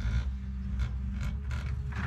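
Komatsu PC200 hydraulic excavator digging: its diesel engine runs steadily while the bucket teeth scrape and creak through rocky soil in repeated short scrapes.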